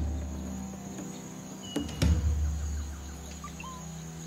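Rainforest insects keeping up a steady high drone over a low, sustained background music bed, with a single thump about two seconds in and a couple of short whistled notes.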